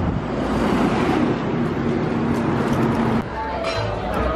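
Steady road traffic noise with a faint hum, cutting off about three seconds in. Voices follow near the end.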